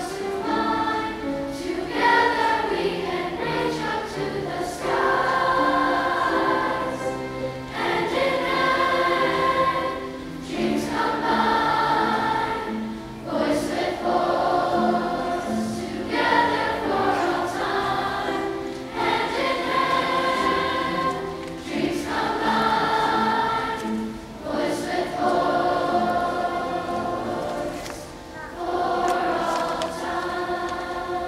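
A large school choir singing a song together, in phrases of a few seconds each with short breaks between them.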